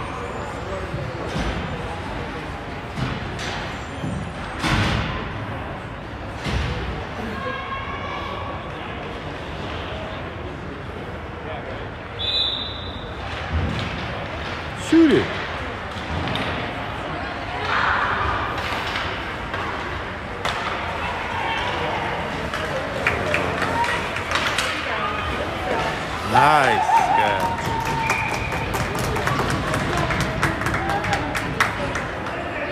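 Indoor ice rink during a youth hockey game: pucks and sticks knocking on the boards and ice, with distant shouts from players and spectators. A short, high whistle blast sounds about twelve seconds in.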